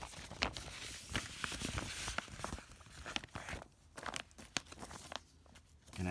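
Paper documents and plastic binder sleeves rustling and crinkling as they are handled and slid into place, with many small sharp ticks. Busiest in the first three seconds, then quieter with only scattered ticks.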